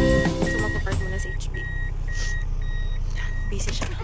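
A car's reversing beeper, a high steady beep about a third of a second long repeating roughly twice a second, heard from inside the cabin over the low hum of the vehicle. The car is backing up to park.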